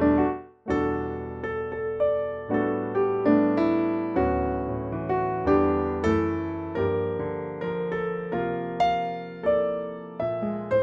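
Roland RP102 digital piano playing its default concert piano sound: chords struck one after another, each ringing and fading, with a short break about half a second in.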